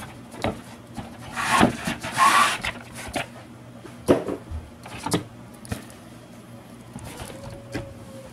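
Cardboard packaging being handled: a rustling scrape of the molded pulp insert and box flaps about one and a half seconds in, then a few sharp knocks as the handheld vacuum is lifted out of the box.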